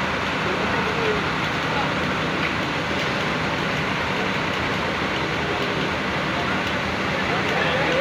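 Indistinct voices over a steady, even background noise that runs without a break.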